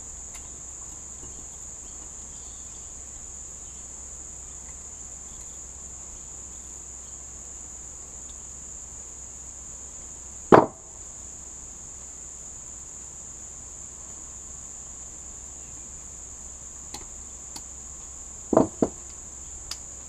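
Piston rings being fitted to an outboard piston with ring expansion pliers: one loud sharp click about halfway through, and a quick double click near the end, over a steady high-pitched whine.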